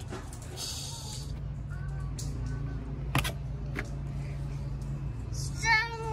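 A plastic gallon vinegar jug being handled and its cap twisted, with a sharp click just after three seconds in, over a steady low hum. A short voice sounds near the end.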